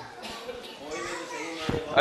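Low-level chatter from a studio audience, with children's voices among it, and a single thump a little before the end.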